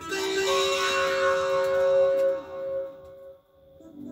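Electronic dance track playing from a vinyl record on a turntable, built on long held synth tones. About two-thirds of the way through the tones drop away into a brief near-silent lull.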